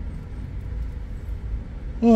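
Low, steady rumble of a stationary car's idling engine, heard from inside the cabin.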